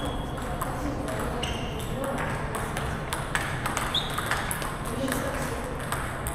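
Table tennis balls being hit back and forth across several tables: irregular sharp clicks of ball on paddle and table, with a couple of short ringing pings.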